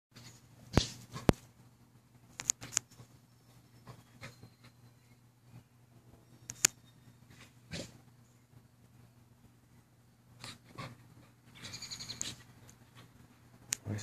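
Two dogs playing, a Rottweiler puppy and a larger black dog: a few short, sharp yips and snaps are scattered through, and near the end comes a longer, high-pitched whining cry.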